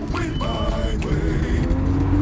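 Car engine running, heard from inside the cabin, its pitch starting to rise in the second half as the car accelerates.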